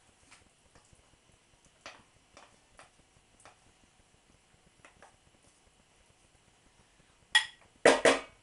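A spoon scraping bolognese sauce out of a bowl into a glass mixing bowl, with a few faint ticks and scrapes, then two sharp knocks near the end as a wooden spoon is tapped against the bowl.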